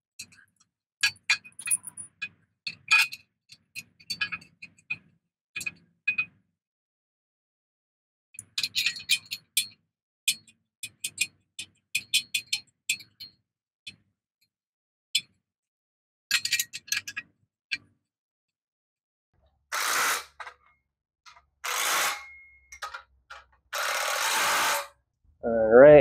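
Metal clinks and clicks of bolts and hand tools as a steel engine stand mounting plate is bolted to the back of a 5.4L engine block, some clinks briefly ringing. Near the end come three longer rasping noises, each lasting about a second.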